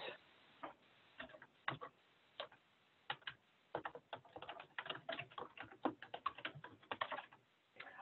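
Faint computer keyboard typing: a few scattered key clicks at first, then a fast run of clicks for about four seconds as a phrase is typed.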